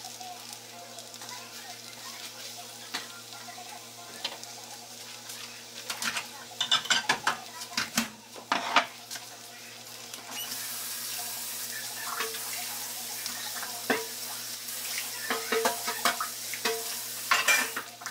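Silicone spatula stirring and scraping scrambled eggs in a nonstick frying pan, with many quick clicks and knocks of utensil on pan. About ten seconds in, a steady hiss begins and carries on, with more clatter near the end.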